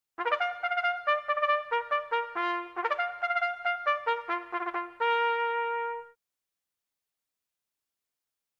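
A trumpet plays a bugle call: a quick run of short notes, then one held note that stops about six seconds in.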